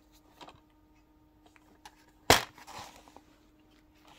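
A plastic DVD case being opened by hand: faint handling, then one sharp snap a little past halfway as the case is pulled open, followed by a softer rustle.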